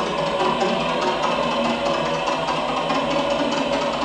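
Live electro-acoustic improvised music: a dense, steady wash of electronically processed sound with a fast, even flutter in the upper range.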